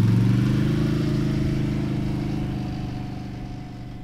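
All-terrain vehicle (four-wheeler) engine passing close by and driving away, running at a steady pitch, loudest at the start and fading as it moves off.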